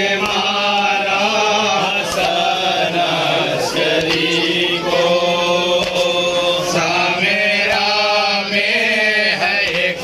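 Men chanting a noha, an Urdu lament for Imam Hasan Askari, in long, drawn-out sung lines.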